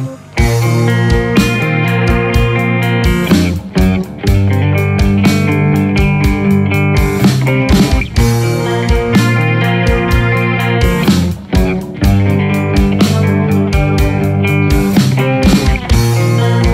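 Rock song played by a band on electric guitar, bass guitar and drums: held, distorted guitar chords over a steady drum beat, with the band dropping out briefly a few times.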